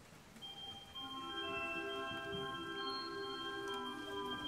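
Church organ starting to play, its notes entering one after another in the first second or so and then held as steady sustained chords.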